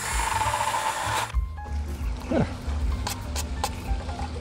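Cordless drill with a spade bit boring through the end of a plastic PVC junction box: a loud whine and cutting noise for just over a second that stops sharply as the bit breaks through. A few light plastic clicks follow as the box is handled, with wind rumbling on the microphone.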